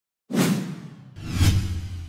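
Two whoosh sound effects for an animated logo intro. The first starts suddenly and fades. The second swells to a peak about one and a half seconds in, with a deep boom beneath it, then fades away.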